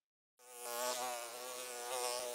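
Silence, then about half a second in a cartoon sound effect of a flying insect's wings begins: a steady buzz that wavers slightly in pitch.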